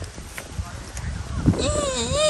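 Wind buffeting the microphone in low, uneven rumbles, then near the end a person breaks in with a long, high, wavering "í" cry as the kite climbs.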